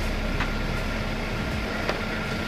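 A steady background hum with two short clicks, about half a second in and near the end, as a knife works against the spiky durian husk.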